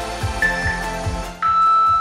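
Workout countdown timer beeps over background music with a steady beat: a short high beep, then a longer, lower beep near the end that marks the start of the exercise.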